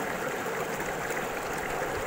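Steady rushing of a flowing stream.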